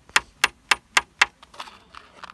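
Hammer tapping a small nail into a wooden loom strip: five quick, sharp strikes at about four a second, then softer rustling near the end.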